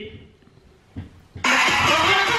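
Near silence with one faint low knock, then the audio of a televised stage show starts abruptly about one and a half seconds in: a studio crowd cheering over music.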